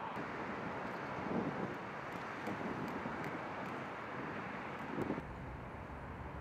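Steady outdoor background noise with a few faint clicks; the background shifts abruptly about five seconds in.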